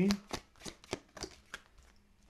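Tarot cards being shuffled by hand: a run of short card clicks, about three a second, growing fainter toward the end.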